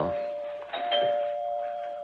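A doorbell chime sound effect rings two notes, the second about three-quarters of a second after the first, and both ring on steadily.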